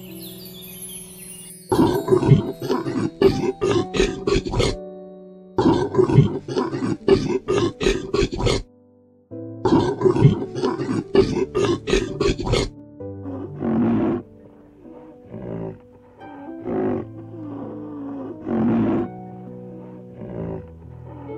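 Animal calls over soft background music: three loud bursts of rapid calls, about four a second and each about three seconds long, then shorter separate calls near the end.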